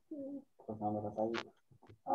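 Faint, hesitant mumbling from a participant on a video call, in two short low-pitched stretches, the second with a soft 's'-like hiss near its end.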